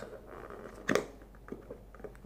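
A fitness band being pulled out of its fitted cardboard box insert: one sharp click about a second in, then a few light ticks of plastic and card being handled.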